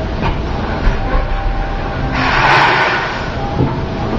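Steady low rumbling background noise, with a brief louder rush of noise about two seconds in that lasts about a second.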